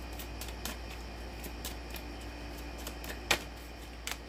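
Tarot cards being handled: a few faint light clicks, then one sharp card snap a little over three seconds in as a card is drawn from the deck, over a low steady hum.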